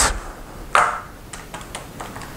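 Buttons of a scientific calculator being pressed to key in a sum: a few faint, quick clicks in the second half. Before them, under a second in, comes a short louder noise, the loudest sound here.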